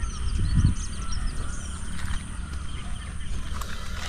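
Small birds chirping and calling in quick short notes in the background, over a steady low rumble on the microphone with a few soft thumps.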